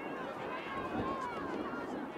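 Several people's voices, talking and calling out at a distance and overlapping, over a steady outdoor background noise.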